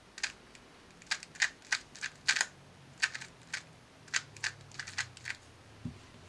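Sharp plastic clacks of a Valk 2 M magnetic 2x2 speed cube's layers being turned quickly through an algorithm, in short rapid clusters of clicks, with a soft low thump near the end.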